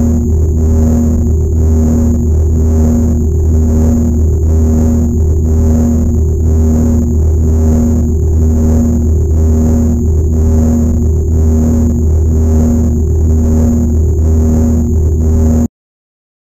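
A loud, steady low electronic drone with a tone pulsing about one and a half times a second and a thin high whine over it; it cuts off suddenly near the end, leaving silence.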